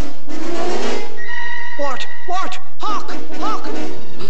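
Orchestral film score with sustained high notes from about a second in. Short rising-and-falling chirps sound over it near the middle and again about three seconds in.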